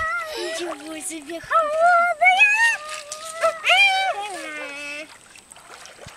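Young children's high-pitched, wordless calls and cries, loudest in the middle seconds and dying away about a second before the end, with light splashing from wading in shallow river water.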